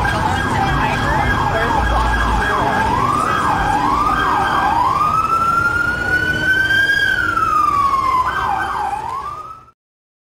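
Electronic emergency-vehicle siren: a fast yelp that slows into rising and falling wails, then one long rise and fall and a final short sweep before the sound cuts off abruptly near the end.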